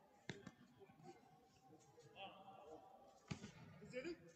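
A few sharp knocks on a judo mat as two judoka move through a groundwork hold, two close together just after the start and one more about three seconds in, over faint murmuring voices in a large hall.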